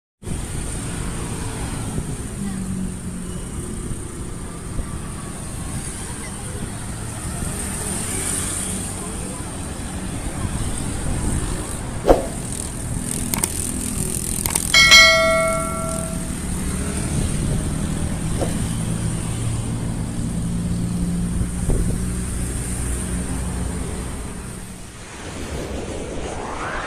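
Road traffic with cars and motorbikes running steadily. About 12 seconds in there is a sharp click, and about 15 seconds in a bright bell ding from a subscribe-button sound effect.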